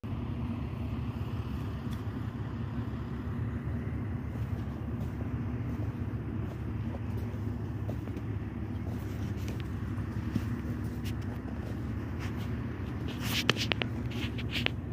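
Steady low drone of an engine running, with a few sharp clicks near the end.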